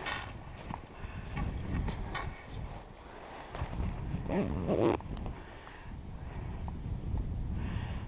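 Snowshoes tramping through deep snow: irregular soft crunching, thudding steps, with a few sharp clicks from the poles.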